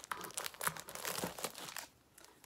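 Plastic wrapping on two packs of five-inch fabric squares crinkling as they are handled, an irregular run of crackles that stops just before the end.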